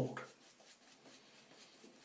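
Faint, soft rubbing of a shaving brush working lather over the face, barely above room tone.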